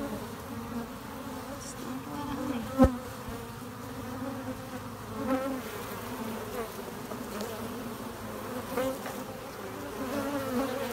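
A mass of Africanized honey bees buzzing steadily at the hive entrance, with louder swells as single bees pass close, about halfway and near the end. One sharp tap sounds about three seconds in.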